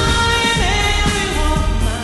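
Pop song with a solo singer's voice over a backing track with a steady bass beat; the voice holds long notes that slide in pitch.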